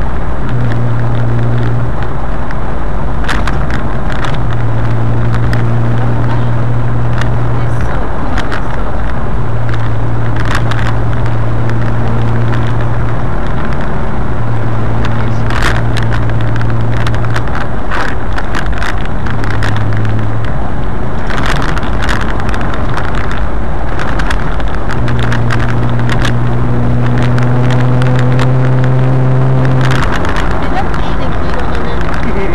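Engine and road noise heard from aboard a moving car, loud throughout, with a low drone that comes and goes and scattered sharp clicks. Near the end the engine note rises as the car speeds up.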